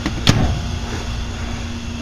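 A single sharp click about a third of a second in, the microwave oven door latching shut, over a steady low hum.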